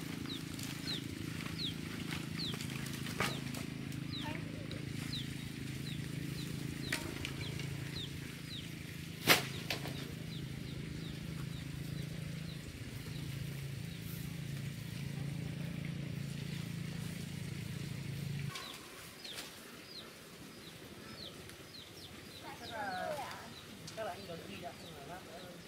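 Outdoor ambience: short high chirps repeating about twice a second over a steady low hum that cuts off suddenly about three-quarters of the way through. A single sharp click near the middle is the loudest sound.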